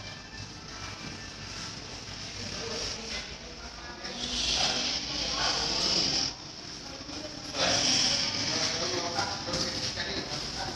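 Indistinct voices and background music, with two spells of louder rushing hiss: one about four seconds in lasting some two seconds, and another about seven and a half seconds in lasting over a second.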